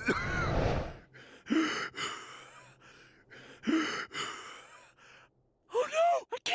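A man's voice gasping for breath: two long, breathy gasps a couple of seconds apart, after a brief rumbling noise in the first second.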